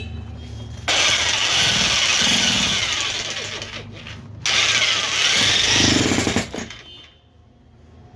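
Electric demolition hammer running under load, chiselling into a brick in two bursts of about three and two seconds with a short pause between.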